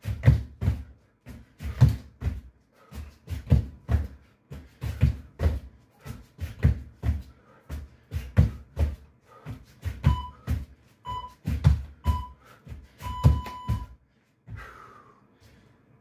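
Burpees on a floor: repeated heavy thuds of hands and feet landing, in pairs about every second and a half. Near the end an interval timer gives three short beeps and one longer beep, ending the 15-second work set, and the thudding stops.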